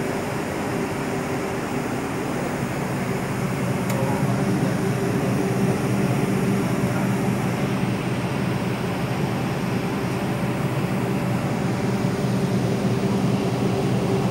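Large diesel generator engines of a power plant running steadily, a continuous drone with a low hum, heard from the control room through its window. It grows a little louder about four seconds in.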